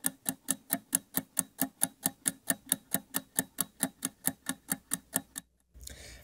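Ticking sound effect for a title sting, like a clock or stopwatch, at an even pace of about five ticks a second. It stops abruptly shortly before the end.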